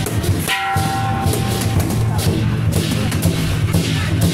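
Lion dance percussion: a big drum beating steadily under repeated cymbal clashes. About half a second in, a ringing tone of several pitches sounds and fades out over about a second.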